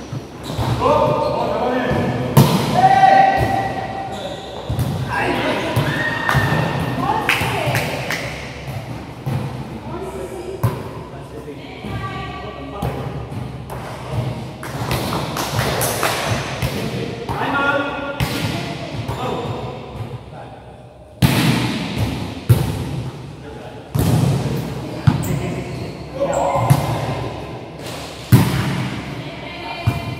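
Sharp thuds of a volleyball being hit and striking the court floor, again and again, echoing in a large sports hall, amid players' shouts and calls.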